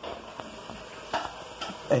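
Faint room noise with a few soft clicks and rustles from a phone being handled.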